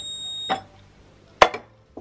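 A digital kitchen scale gives one high electronic beep about half a second long. Then a stainless steel milk pot is set down on its platform with a sharp knock about a second and a half in.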